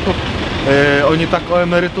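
Speech in Polish at a street press conference, over a steady hum of street traffic.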